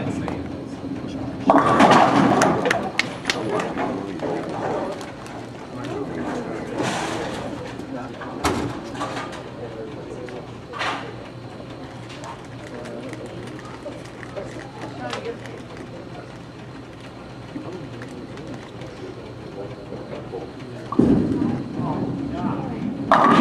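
A bowling ball rolling down the lane and crashing into the pins about two seconds in, followed by scattered clatter and knocks in the alley. Near the end a second ball thuds onto the lane and starts rolling.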